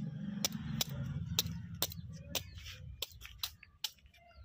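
Freshwater snail shells being crushed with the end of a bottle on a brick floor: a string of sharp cracks, two or three a second, coming faster near the end.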